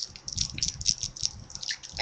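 Plastic candy wrapper crinkling as it is handled, a run of irregular small crackles.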